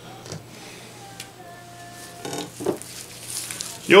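Faint wet squishing and smearing of mayonnaise being spread by a gloved hand over a raw beef brisket, mostly in the last second or two, with a couple of light clicks and knocks before it.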